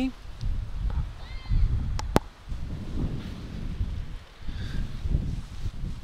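Wind buffeting a Comica shotgun microphone fitted with a furry dead-cat windscreen: an uneven low rumble that rises and falls. Two sharp clicks come close together about two seconds in, from handling the microphone and camera while its wind-cut filter is switched.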